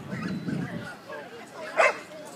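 A dog barks once, sharply and loudly, near the end, over the low chatter of people.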